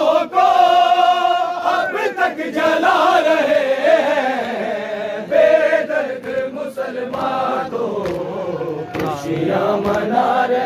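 A group of men chanting a Shia noha (Urdu lament) together, led by a reciter's voice, in a continuous sung chant.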